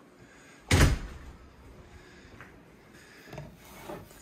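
A door swinging shut with a single loud bang a little under a second in, ringing briefly, then quiet room sound with a few faint knocks near the end.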